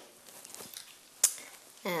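A spoon stirring corn flour into yogurt-marinated chicken pieces in a glass bowl, a faint soft scraping with one sharp tap of the spoon on the bowl a little past halfway.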